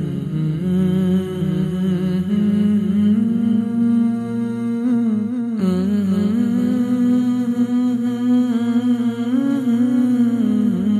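Wordless vocal music: voices humming a slow, sustained melody, with a sudden break in the sound just past halfway.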